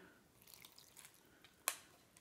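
Dye trickling and dripping faintly from a small plastic beaker into a plastic pot of scrunched cotton, followed by a single sharp click late on.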